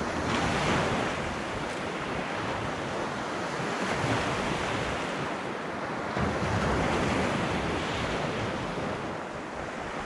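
Small waves breaking and washing up the beach, the wash swelling three times a few seconds apart, with wind rumbling on the microphone.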